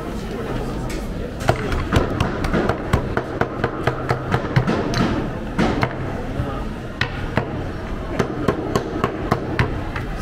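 Clatter of tableware: many sharp knocks and clinks, several a second, over a murmur of voices.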